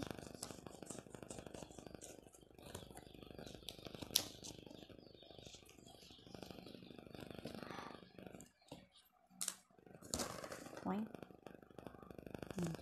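Wrapping paper and tape crinkling and a cardboard gift box being handled as it is unwrapped: scattered small crackles and clicks, with a sharper snap about four seconds in and another shortly before the end.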